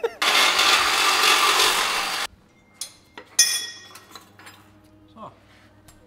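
A power tool runs in one steady burst of about two seconds and cuts off sharply as the exhaust bolts come undone. A little over a second later a metal part clinks and rings briefly, followed by small knocks.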